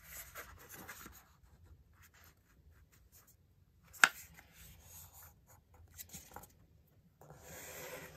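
A square of paper being folded in half by hand and its crease pressed flat on a cardboard board, with faint scattered rustling and rubbing and one sharp tap about four seconds in.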